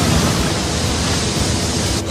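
Cartoon sound effect of a jet of fire blasting out: a loud, steady rushing noise that breaks off abruptly at the end.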